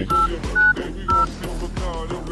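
Samsung Galaxy S4 Active's in-call keypad sounding three short two-tone DTMF beeps, about half a second apart, as digits are tapped, over background music.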